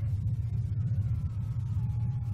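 A steady low rumble, with a few faint thin tones drifting slightly lower above it.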